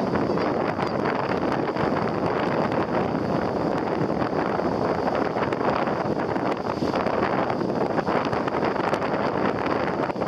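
Wind buffeting the microphone in a steady, crackling rush, over the wash of breaking surf.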